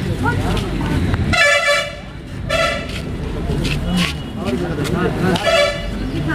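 Vehicle horn honking three times: a toot of about half a second, a shorter one a second later, and a third near the end.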